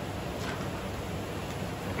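Steady background hum and hiss of a commercial kitchen, typical of ventilation or air conditioning, with no distinct sound from the knife.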